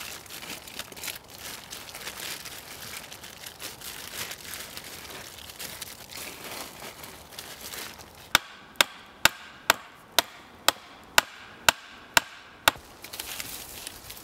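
Green tarp rustling and crinkling as it is handled at the shelter's edge, then, a little after halfway, a run of about ten sharp, evenly spaced strikes, a little over two a second, with a faint ring between them: something being hammered in at the tarp's base.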